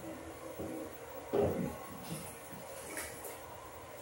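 Bathwater sloshing once as a person rises from a bubble bath, about a second in, with faint light ticks later.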